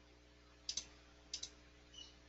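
Computer mouse clicked in two quick double-clicks, about two-thirds of a second apart, with a single fainter click near the end.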